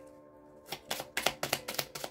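Oracle cards being shuffled by hand: a quick run of light papery clicks, about six a second, starting a little under a second in, over soft background music.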